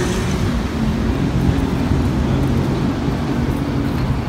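A road vehicle's engine running steadily nearby, a low hum under a haze of traffic noise.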